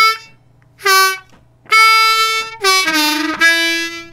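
Ten-hole diatonic harmonica in D playing a blues phrase on the 2 and 1 draw holes: separate, tongue-cut draw notes, the 2 draw alternating with its whole-step bend. The phrase steps down to a lower held note on hole 1 near the end.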